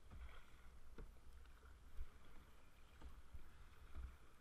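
Faint sound of kayak paddling on choppy sea: soft paddle splashes about once a second over water lapping at the hull, with a low wind rumble on the microphone.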